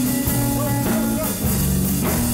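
Live rock and roll band playing: electric guitar over slapped upright double bass and a drum kit, with a steady, unbroken beat.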